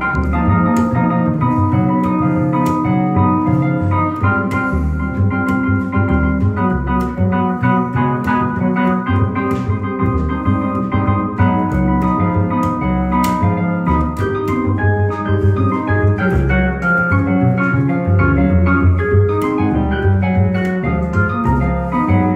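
Double bass and keyboard duo playing: plucked upright bass under sustained keyboard chords with an organ-like tone.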